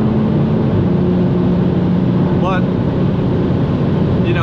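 In-cabin sound of an Audi S3 8P's turbocharged 2.0 TFSI four-cylinder pulling hard at high autobahn speed, a steady engine note under heavy road and wind noise. The note steps slightly lower in pitch just under a second in, then holds steady.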